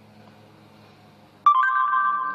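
Faint room tone, then about one and a half seconds in a short electronic chime of a few steady tones from the phone's speaker: Google voice search on a Samsung Galaxy S2 signalling that it has stopped listening to the spoken query.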